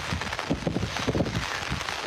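Wind buffeting a phone's microphone outdoors: a steady rough hiss with uneven low gusts and thumps.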